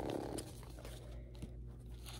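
Faint rustling and light clicks of Pokémon trading cards and their foil pack wrappers being handled. The tail of a breathy gasp sounds in the first half second.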